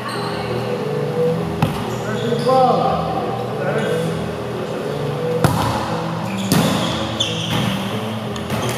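Indoor volleyball being hit: sharp smacks of hands on the ball, one about a second and a half in and two more close together past the middle, over players' voices calling out across the gym.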